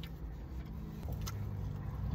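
Low, steady rumble of a car idling, heard from inside the cabin, growing a little stronger about a second in, with a couple of faint clicks.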